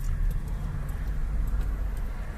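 Steady low rumble of a car heard from inside its cabin, the engine humming evenly as the car creeps along in slow traffic.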